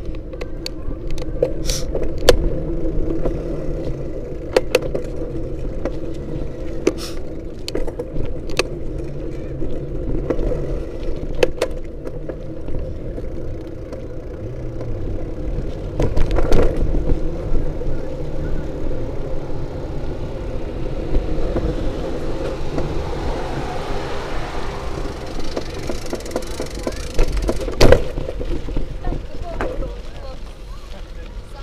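A moving action camera's own rolling and handling noise: a steady low rumble broken by a string of sharp knocks and rattles, most frequent in the first half, with one strong knock near the end.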